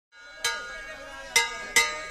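Three sharp metallic strikes, about half a second, a second and a half and nearly two seconds in, each ringing on with a bell-like tone: a sound effect for the animated logo.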